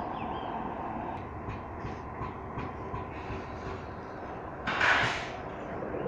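Ferromex diesel-electric locomotives rolling slowly past, engines and wheels rumbling, with light clicks from the wheels over the rail. About five seconds in comes a short, loud hiss lasting about half a second.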